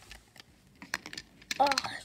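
A few light, sharp clicks and taps, like small toy figures being handled and knocked together, through the first second and a half. A voice saying "Oh" follows near the end.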